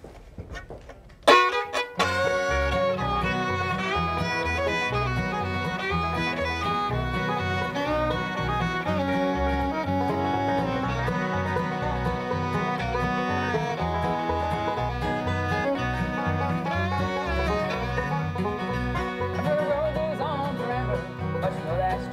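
Bluegrass band playing an instrumental intro on banjo, fiddle, acoustic guitar and a small acoustic bass, with a steady pulsing bass line under the banjo and fiddle. The music starts with a sharp first strike about a second in.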